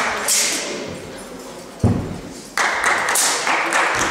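Thuds of a wushu athlete's feet on the competition carpet during a broadsword routine, the loudest a sharp thud about two seconds in, with bursts of hissing noise before and after it.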